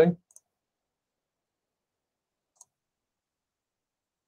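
Near silence broken by two faint, short clicks, about half a second and two and a half seconds in, from a computer mouse.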